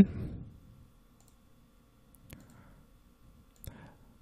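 Computer mouse clicking: one distinct sharp click a little over two seconds in and a few fainter clicks near the end, against quiet room tone.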